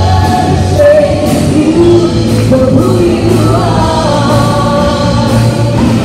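Live worship band playing: women singing the lead and backing lines over electric guitar and keyboard, with a steady beat.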